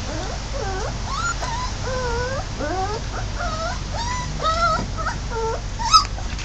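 Dog whimpering: a run of short, high whines that slide up and down in pitch, one after another, with a sharper, higher one at the very end.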